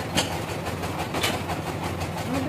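Bandsaw mill running with a steady low hum, with two sharp clacks about a second apart.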